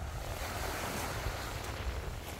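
Wind rumbling on the microphone, with a rushing wash of surf that swells and fades about a second in.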